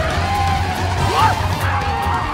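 Lively film-score music over a steady low rumble and clatter from a ramshackle homemade go-kart jalopy driving along a street.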